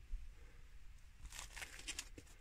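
Faint rustling and crinkling handling noise: a soft tick just after the start, then a short run of light crackles in the second half.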